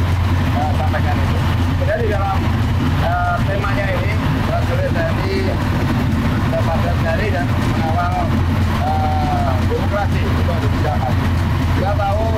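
Steady low rumble of military vehicle engines as a column of tactical vehicles drives past, with a voice talking indistinctly over it.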